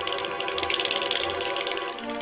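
A fast, continuous run of ratchet-like clicks, strongest about halfway through, over soft background music with held notes.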